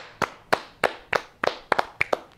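Two people clapping their hands in slow, uneven applause, about three claps a second, some claps landing close together in pairs.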